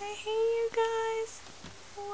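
A high voice singing two held notes, each about half a second long, then stopping.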